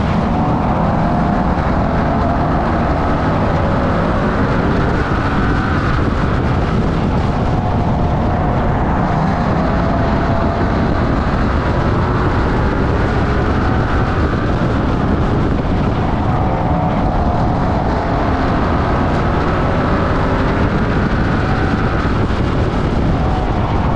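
Bomber-class stock car's engine at racing speed, heard from the hood: loud and continuous, its pitch rising and falling several times as the car accelerates down the straights and lifts off for the turns.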